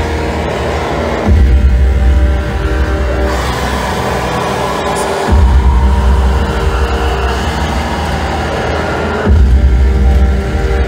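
Loud live amplified music: sustained droning keyboard tones and a voice through a microphone, over a heavy low bass swell that returns about every four seconds.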